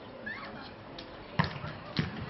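Two sharp thuds of a faustball in play, about half a second apart, the first the louder, with players' voices calling faintly behind them.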